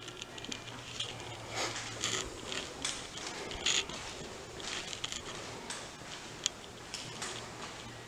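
Quiet footsteps on a hard floor, an irregular series of soft taps about once or twice a second, over a faint steady low hum.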